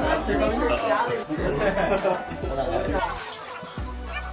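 Many people talking over one another in a room, with background music whose low bass notes come and go.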